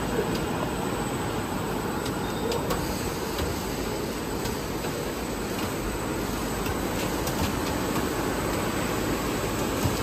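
Steady machinery noise of an HDPE double-wall corrugated pipe extrusion line running, with a few faint ticks.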